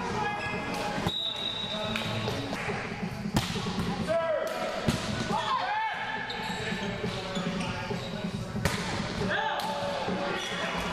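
Volleyball rally on an indoor court: several sharp hits of hands and forearms on the ball, the loudest about three and five seconds in, among players' calls and shouts in a large gym.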